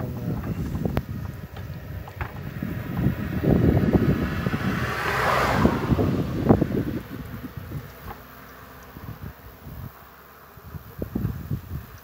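Daewoo Tico's small three-cylinder engine running with the bonnet open, mixed with wind and handling noise on the microphone as a hand works the spark plug lead. The noise is loudest in the middle of the stretch and drops away after about eight seconds, with a few knocks near the end.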